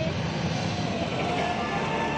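A steady low rumble with a few faint held tones over it, from a show soundtrack played through the venue's loudspeakers.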